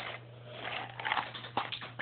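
A low steady hum in a small room, with a few faint clicks and rustles.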